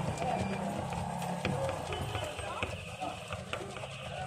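Jhalmuri mix of puffed rice and spices being tossed and stirred by hand in a plastic bowl: a dry rustling rattle with scattered light knocks against the bowl.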